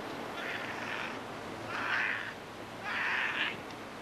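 Three harsh, caw-like bird calls, each about half a second long and about a second apart, the last two the loudest. Under them is a steady wash of surf and wind.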